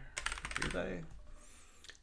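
Computer keyboard typing: a quick run of keystrokes in the first half second, then it tails off.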